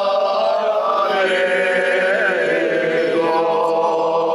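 A small group of men singing a cappella in Corsican polyphony, several voices holding long notes together in close harmony. The chord shifts about a second in and again just after three seconds.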